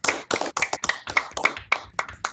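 Hands clapping, heard through video-call audio: a quick, uneven run of claps.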